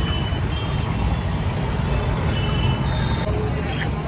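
Street traffic running steadily with a low rumble, with a few short high-pitched beeps near the start and again around the middle, and voices in the background.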